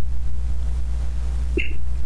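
A steady low hum, with one very short faint sound about one and a half seconds in.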